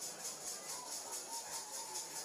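Faint ballpark ambience: a low, steady wash of distant crowd and stadium noise, with faint music.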